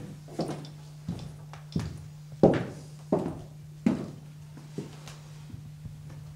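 Footsteps on a wooden floor: about seven sudden knocks at walking pace, roughly one every three-quarters of a second, over a steady low hum.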